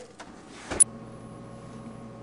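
A sharp click a little under a second in, followed by a steady hum with a few fixed tones.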